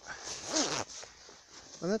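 Thick winter coat fabric rubbing and rustling against the phone's microphone for most of the first second, with a muffled vocal sound in it, then a spoken word starting near the end.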